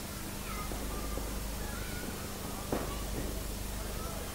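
Arena background of spectators calling out in short, scattered shouts over a steady hum, with one sharp smack near the end, a punch landing during the amateur boxing bout.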